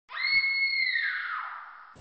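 A single high-pitched shriek, held steady for about a second, then sliding down in pitch as it fades away.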